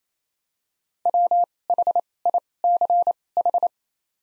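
Morse code sent as a pure tone of about 700 Hz at 28 wpm with wide Farnsworth gaps between letters, spelling the word WHICH (.-- .... .. -.-. ....). It starts about a second in and stops near the end.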